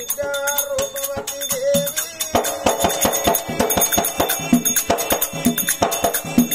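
Oggu Katha folk music: a held, slightly wavering note for about two seconds, then steady rhythmic percussion with jingling rattle and cymbal strokes over drum beats.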